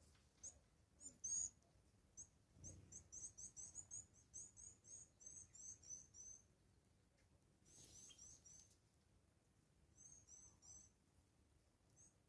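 Faint, rapid runs of short, very high-pitched 'tsee' calls from blue waxbills, thickest through the first half and returning in two short bursts about eight and ten seconds in.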